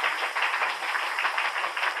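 Audience applauding, a steady run of clapping heard through the hiss and narrow sound of an old radio recording.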